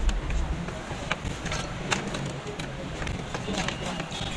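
Scattered light clicks and rattles of a supply wire and its connectors being handled and fitted to the heater's terminals, over faint background voices.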